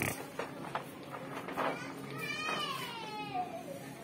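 A high, wailing voice gives one drawn-out cry that slides down in pitch over about a second and a half, past the middle. Beneath it runs a steady low hum, and a few light knocks come in the first second or two.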